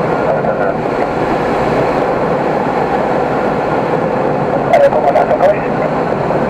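Steady rush of air over the canopy of an SZD-50 Puchacz two-seat glider in flight, heard from inside the cockpit. About five seconds in, a short sound with a wavering pitch and a few clicks rises briefly above it.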